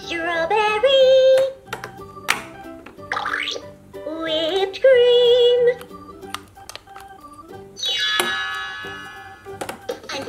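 LeapFrog Scoop & Learn Ice Cream Cart's electronic speaker playing a cheerful children's tune with sung phrases and sliding sound effects. A couple of sharp clicks are heard about two seconds in and near the end.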